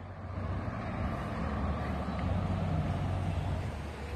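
Road traffic on a nearby street: a steady low rumble of passing vehicles that builds slightly toward the middle and eases near the end.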